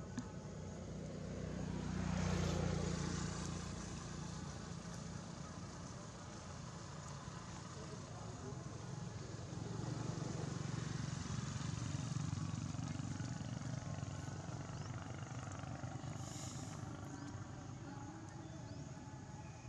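Motor vehicle engines, a low hum that swells about two seconds in and again from about ten to thirteen seconds in, as vehicles pass.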